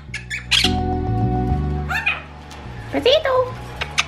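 Quaker parrots giving several short, sharp squawks over background music with a steady, repeating low bass line.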